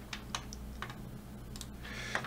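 Faint clicking of a computer keyboard: a handful of separate keystrokes spread over two seconds.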